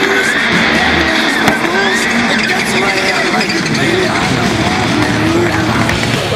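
A pack of rallycross cars accelerating hard from a race start, engines revving up and down with some tyre noise, mixed with loud music.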